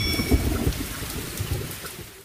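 Sound-effect tail of a radio station's intro sting: a hissing, crackling noise with faint low thumps that fades out steadily over about two seconds.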